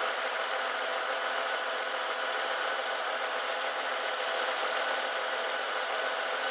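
SsangYong Chairman W 700's six-cylinder engine idling steadily, an even running hum with no change. The engine sounds healthy: the inspector finds its sound and vibration good.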